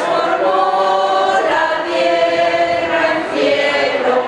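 A group of procession walkers singing a hymn together, unaccompanied, in long held notes.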